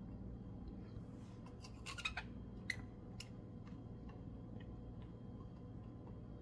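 Faint scattered clicks and light scraping from a silicone spatula and ceramic bowl as thick dissolved yeast is poured and scraped into flour, a cluster of clicks about two to three seconds in, over a low steady hum.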